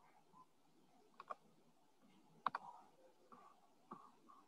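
Computer mouse clicking a few times over faint room tone: short sharp clicks in pairs, about a second in and again, loudest, about two and a half seconds in.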